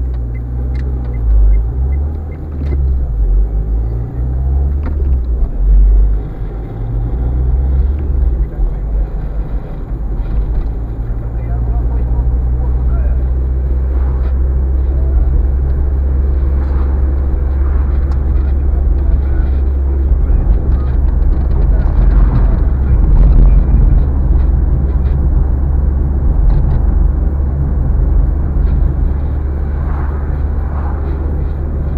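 Car running, heard from inside the cabin: a low engine and road rumble. It is uneven for about the first ten seconds, then settles into a steady drone as the car goes along the road.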